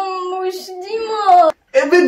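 A long drawn-out high vocal sound, held like a sung note with small wavers in pitch, that breaks off suddenly about one and a half seconds in; quick talking follows right after.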